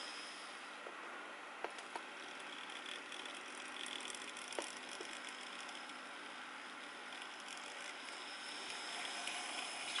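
Hornby TT-gauge Class A4 model locomotive running along the track on DCC digital power through its Lenz Next18 decoder, its motor and gear mechanism giving a faint, steady whirr with a few light clicks.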